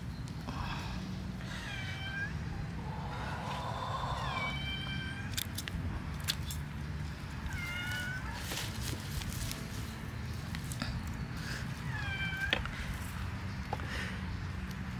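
A cat meowing four times, each call short and falling in pitch, with a few sharp clicks from hands working among the sweet potato vines and soil.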